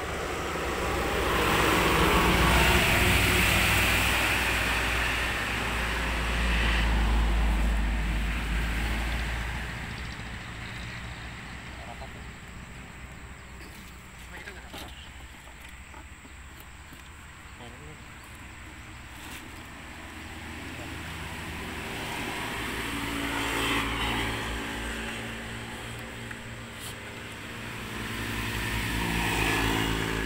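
Passing motor vehicles: engine sound swells and fades in the first several seconds, then builds and swells twice more toward the end.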